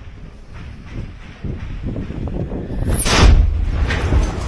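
A loud explosion close by about three seconds in, a deep rumbling blast from incoming fire landing near the position, after quieter rustling and handling noise.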